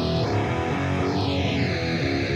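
Electric guitar recording playing through two cabinet impulse responses that are slightly out of time alignment, with a sweeping flanging, chorusing colour as the alignment is shifted. This is the sign of phase cancellation between the two IRs.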